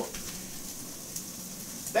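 Chopped onions, bacon and browned sausage sizzling steadily as they sauté in a hot pan.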